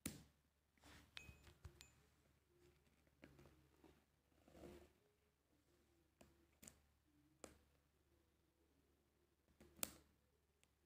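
Faint clicks, scratches and rustles of a sealed cardboard phone box being handled and picked at along its edge with a thin pointed stick to break the seal; a handful of sharp ticks, the loudest near the end.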